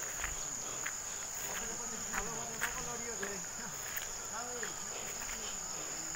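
A steady, unbroken high-pitched insect drone, with faint voices talking in the distance and scattered clicks of footsteps on a stony path.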